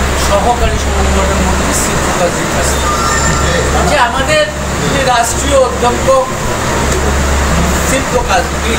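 A man speaking into a bank of press microphones, over a steady low hum.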